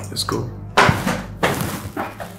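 A sudden thud about three-quarters of a second in, with a second knock shortly after, amid indistinct voices.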